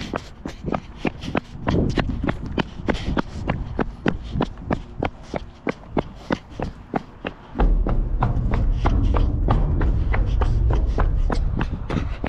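Footsteps of a person running, about three sharp strides a second, with wind buffeting the microphone, heaviest in the last third.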